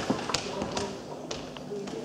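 A handful of sharp, irregular taps or knocks, about five in two seconds, the loudest about a third of a second in.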